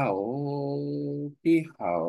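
Only speech: a man reading Vietnamese aloud very slowly. He draws out each syllable at an even, low pitch, so it sounds close to chanting.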